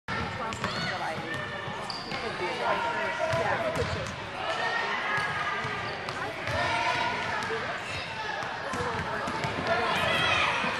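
A basketball bouncing on a hardwood gym floor during a children's game, with sharp knocks scattered through, under a steady mix of children's and adults' shouts and chatter echoing in the gym.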